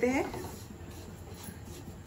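A silicone spatula stirring dry-roasting semolina around a non-stick kadai, giving a soft, scratchy rubbing.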